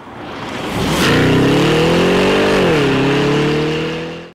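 Logo-intro sound effect: a rising rush builds to a sharp hit about a second in, then a car engine revs, its pitch sagging briefly and climbing again before fading near the end.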